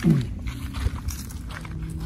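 Footsteps on a dry earth path over a low rumble, with a steady low hum coming in past the middle.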